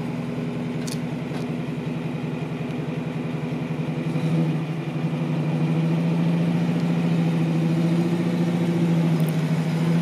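1938 Buick Special's straight-eight engine running smoothly at a steady idle. About four seconds in it grows louder, and its low hum stays steady from then on.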